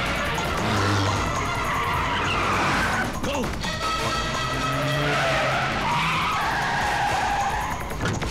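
Film car-chase sound: car engines revving and tyres skidding in sweeping rises and falls, over a background score. A sharp hit comes about three seconds in.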